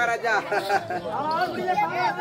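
A man's voice speaking loudly and continuously in stage dialogue, with little pause.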